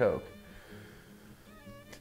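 A man's voice drawing out the word "coke" in a falling tone, then a short pause with only faint room sound and a brief soft vocal hum near the end.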